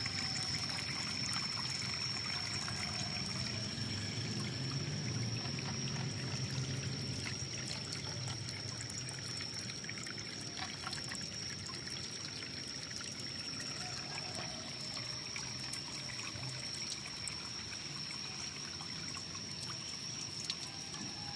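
Water running and trickling steadily into an outdoor cement fish pond as it is topped up. A thin, steady high-pitched tone runs along with it.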